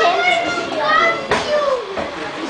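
Children's voices chattering and calling out over one another, with a single sharp click about a second and a half in.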